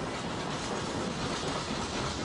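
Goods wagons of a freight train rolling past at speed: a steady noise of steel wheels running on the rails.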